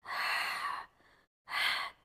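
A woman breathing audibly through a Pilates abdominal exercise. First comes a long, breathy exhale lasting just under a second, then, after a short pause, a shorter breath.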